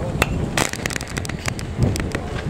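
A pitched baseball pops into the catcher's mitt. A quick run of sharp, irregular clicks and pops follows, with wind rumbling on the microphone.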